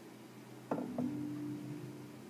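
Acoustic guitar, quiet: two single notes picked about a third of a second apart, the second left ringing steadily, over faint sustained string tones.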